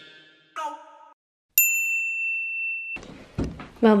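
A short musical chime, then a steady high electronic beep that starts with a click, holds for about a second and a half and cuts off abruptly. Room noise and a voice come in near the end.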